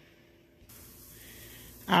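Pot of chicken soup at a rolling boil under a glass lid: a steady hiss that starts about a third of the way in.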